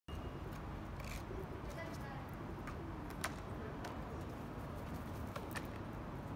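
City street ambience: a steady low rumble with faint voices, and a few short sharp clicks, the loudest a little past three seconds in and two close together near the end.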